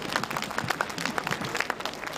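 An audience applauding: many hands clapping in a dense, irregular patter.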